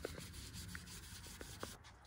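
Faint rubbing of a green Scotch-Brite scouring pad scrubbing a dirt bike's engine side cover, with a few light scrapes.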